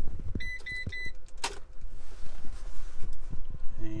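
Ram ProMaster dashboard key-in-ignition reminder chime: three quick high beeps, then a single click about a second and a half in.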